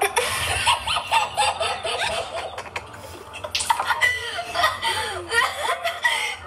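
A young child's high-pitched voice and laughter, with a rushing hiss in the first second.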